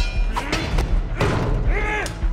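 Action-scene soundtrack from a TV drama: a dramatic score with repeated heavy, deep thuds.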